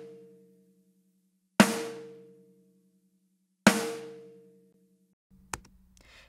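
Recorded snare drum hits, two in full about two seconds apart, each a sharp crack that rings out and dies away over about a second. The snare runs through a compressor set to zero milliseconds release, so it recovers instantly after each hit.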